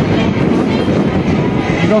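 Steady loud rushing noise with faint voices of bystanders in it; a man starts speaking right at the end.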